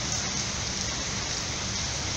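Rain falling steadily: an even, unbroken hiss.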